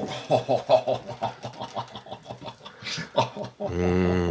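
A voice making wordless humming and 'mm' sounds in short syllables, ending in a long held hum near the end.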